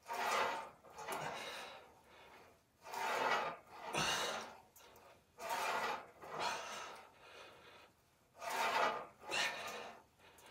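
A man breathing hard in and out in time with lat pulldown reps on a cable machine, about four breath pairs, one pair every two to three seconds.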